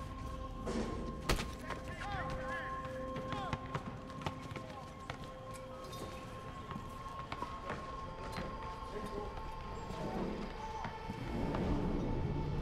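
Film soundtrack: a music score of sustained held notes over yard ambience with indistinct voices. There is a sharp knock a little over a second in.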